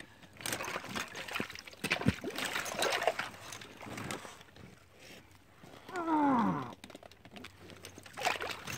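Water splashing and streaming off a large trapped beaver as it is lifted out of shallow water, in irregular splashes and drips. About six seconds in, a man gives one strained grunt of effort that falls in pitch.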